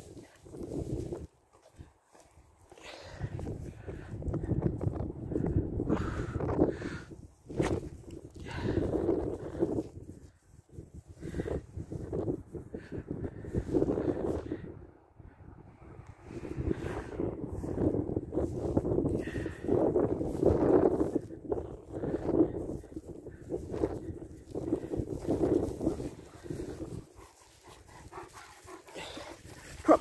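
German Shepherd dogs vocalising in repeated bursts of a second or two, on and off, while playing ball.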